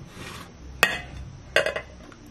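A clear glass lid slides onto a glass baking dish and lands with one sharp, ringing clink a little under a second in, followed by a short clatter near the end.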